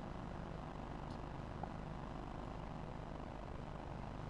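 Faint, steady low hum and hiss of background ambience at an outdoor cricket ground, with no distinct events.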